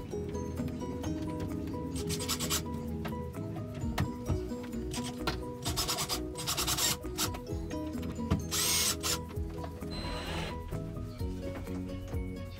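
Black+Decker cordless drill/driver running in about five short bursts of half a second or so, driving screws into a shower wall panel, over background music.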